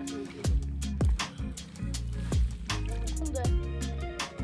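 Background music with a steady beat: deep bass-drum hits that drop in pitch, quick hi-hat ticks and held bass notes.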